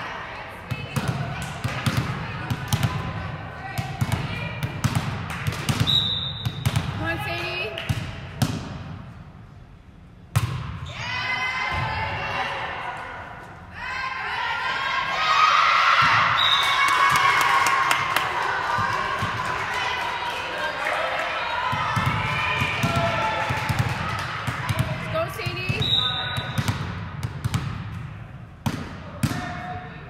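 Volleyball play in an echoing gym: repeated ball hits and thuds, and players calling out. In the middle comes a longer burst of cheering and shouting from players and spectators as a point is won.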